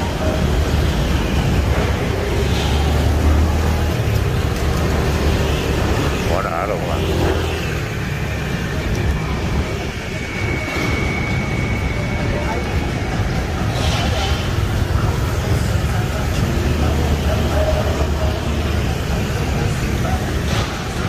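Steady city traffic rumble from surrounding streets, with voices in the background.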